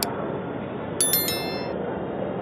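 A bright, multi-tone notification-bell ding about a second in, ringing out for roughly half a second: the sound effect of a subscribe-button animation, laid over steady metro-platform background noise.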